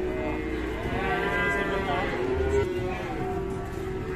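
A cow mooing: one long call of more than two seconds that rises and then falls in pitch.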